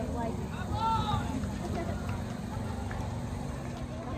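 Outdoor ballfield ambience: distant, indistinct voices over a steady low rumble, with a short high-pitched call about a second in.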